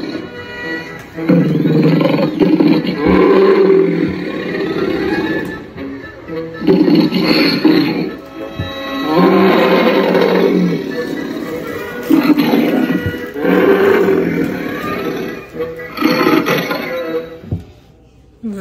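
Spirit Halloween Barnaby the Bear animatronic playing its sound track: a bear's roars and growls over music, in a run of loud phrases a second or two long with short gaps. It fades near the end.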